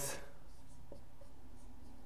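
Dry-erase marker writing on a whiteboard: faint, short strokes.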